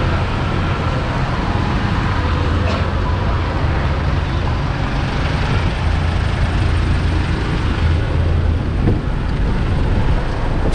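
Steady street traffic noise: a continuous low rumble of vehicle engines with a broad hiss over it.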